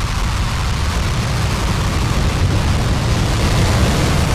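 Falcon 9 rocket's nine Merlin 1D engines at full thrust seconds after liftoff, climbing off the pad: a steady, loud, deep roar.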